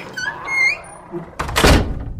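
Sound-design effect: a heavy thud with a rush of noise about one and a half seconds in, the loudest thing here, after a few brief high-pitched rising chirps. A low rumble carries on under it.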